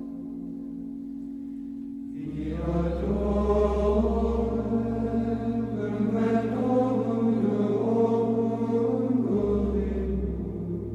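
Sacred choral chant with held notes over a sustained low bass drone. It grows fuller and louder about two seconds in, and the bass note shifts twice.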